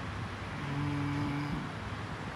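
A low, steady hum of one held pitch, lasting about a second and starting about half a second in.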